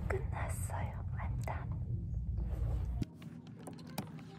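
A woman whispering a few words over a steady low rumble, which cuts off abruptly about three seconds in. After the cut, a few faint clicks of items being handled.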